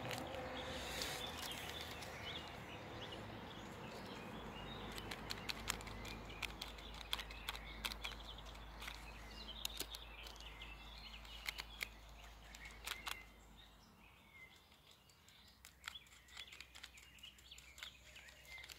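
Faint birds chirping, with scattered soft clicks and paper rustles from hands tapping a cactus flower to shake its pollen onto a folded paper. A low steady rumble underneath drops away about fourteen seconds in.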